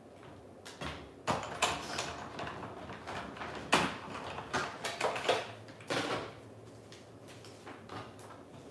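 A die-cutting machine cutting a small cardstock sentiment with a rectangle die: a run of irregular knocks, clacks and scraping as the plates and die are handled and passed through.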